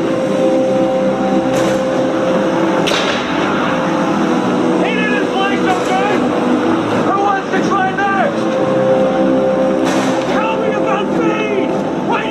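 Dramatic film soundtrack inside an aircraft: a steady droning hum with rushing noise. Wavering, voice-like cries rise and fall about five to eight seconds in, and sharp cracks come about three and ten seconds in.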